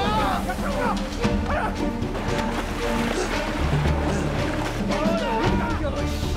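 Film score with steady held tones over the wash of a storm at sea, with men shouting near the start and again near the end.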